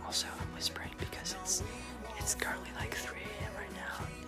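A man speaking softly, close to a whisper, over quiet background music with a steady low beat.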